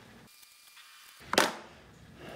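Faint room tone, then about one and a half seconds in a single short, sharp knock as a hand handles a submersible LED light strip in an aquarium.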